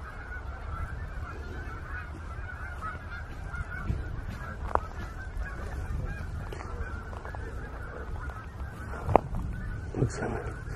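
A flock of geese honking continuously, many calls overlapping, under a low rumble. Two sharp clicks stand out, one near the middle and one near the end.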